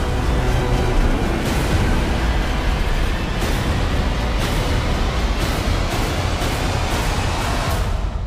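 Loud dramatic trailer score mixed with a deep rumble of disaster sound effects, punctuated by repeated heavy hits about once a second, all cutting off at the end.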